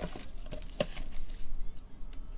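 Handling noise of a trading card and clear plastic in gloved hands: a low rustle with two short clicks, the louder one a little under a second in.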